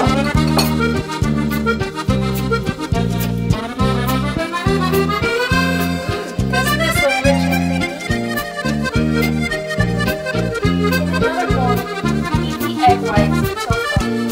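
Background music with a steady, evenly repeating bass beat and a melody above it.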